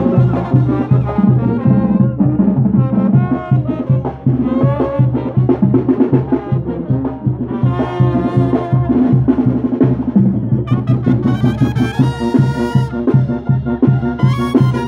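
Brass band music: trumpets and trombones playing over a steady drum beat, loud throughout, with a brighter, higher passage in the last few seconds.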